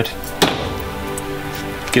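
A single hammer blow on a steel nail punch, driving a copper boat nail into the wooden planking, about half a second in, over background music.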